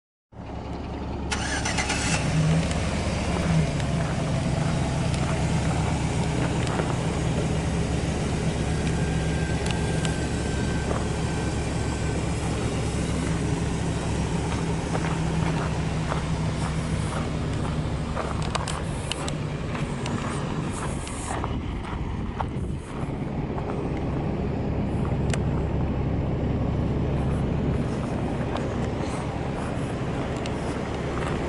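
Full-size pickup truck's engine idling steadily, a constant low hum.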